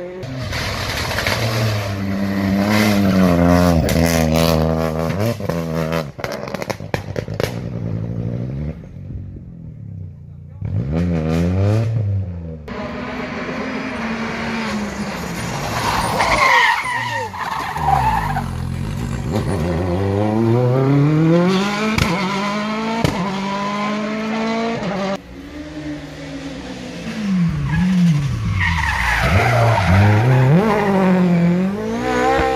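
Rally cars driven hard through corners one after another, engines revving up and down through gear changes with sharp crackles and pops when lifting off. Tyres squeal as the cars slide through hairpin bends.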